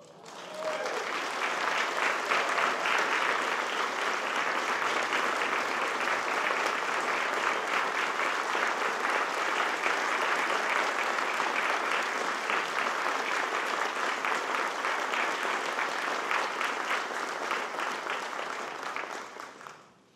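Audience applauding: dense, steady clapping that starts just after the music stops and fades out near the end.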